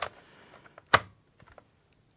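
Greenworks 40V lithium-ion battery pack being pushed down onto its charger, plastic knocking on plastic, with one sharp click about a second in as it seats, and a few faint clicks around it.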